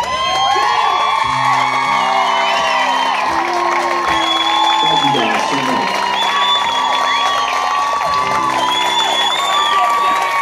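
Live audience cheering and whooping, with long high whistles, over the last ringing acoustic guitar chords of a country song played through the PA.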